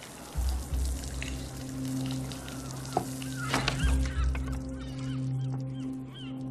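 Film soundtrack: a sustained low music score, with water spraying from an outdoor beach shower and short high chirping calls in the second half.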